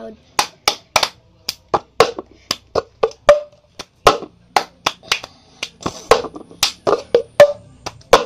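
The cup game rhythm played fast: hand claps, taps on the tabletop or floor, and a cup picked up and knocked down, in a quick run of sharp hits about three a second.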